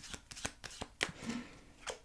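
A deck of small round oracle cards shuffled by hand: a quick run of light, irregular card clicks and flicks, then a card drawn off the deck and laid down near the end.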